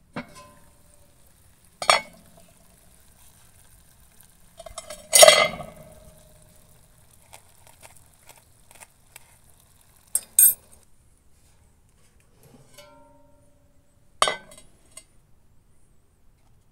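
Metal clanks and clinks of a cast-iron roaster and its lid on the solar cooker's wire rack, about five separate knocks, some with a short ringing after them. The loudest is about five seconds in.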